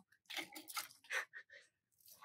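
Bypass loppers cutting through a woody rose cane: a few short crunching, rustling sounds in quick succession.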